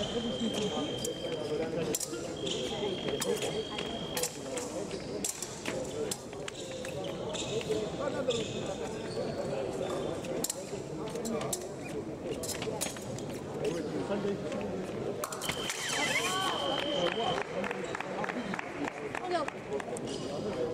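Épée bout on a metal piste: sharp clicks of blade contact and footwork over a murmur of voices in the hall. Steady electronic scoring-machine tones sound near the start, again at about 2–4 s, and for about two seconds near three-quarters through, when a touch is scored to level the bout.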